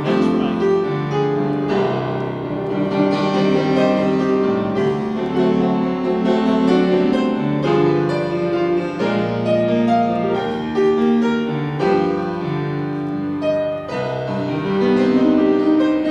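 Grand piano played live as ballet class accompaniment: a slow, flowing piece of held chords under a melody.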